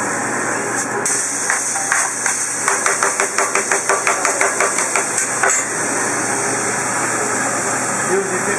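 Steak sizzling on a hot steel flat-top griddle, the sizzle growing louder about a second in as the meat goes down. A metal spatula clacks against the griddle in a quick run of about five strikes a second for several seconds.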